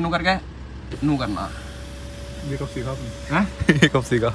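Electric sunroof motor running as the panoramic roof opens, a thin steady whine that starts about a second in, over a low steady hum of the idling car.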